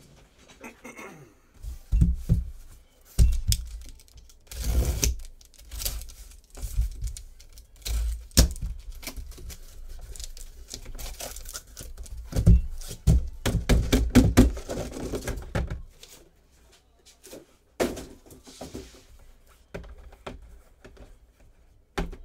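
A cardboard shipping case being handled and opened by hand: a series of thunks as it is turned over and set down, with stretches of cardboard tearing and scraping. Toward the end, the boxes from inside are set down and stacked on the table.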